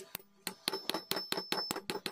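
Small steel hammer tapping the pivot end of a steel folding knife laid on a steel anvil block, peening the pivot pin: about a dozen sharp metallic taps with a high ringing ping, quickening to about six or seven a second after the first half second.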